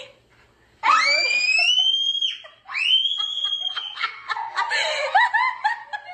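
Two long, high-pitched shrieks, each rising and then held, followed by a run of short bursts of laughter near the end.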